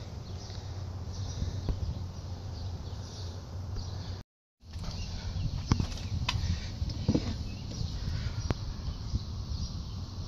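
Outdoor background with a steady low hum and a few short clicks as a phone is handled and turned around. The sound cuts out completely for a moment about four seconds in.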